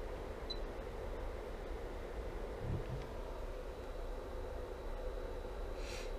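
Steady low hum with faint hiss, the room tone of the workbench, with no distinct event.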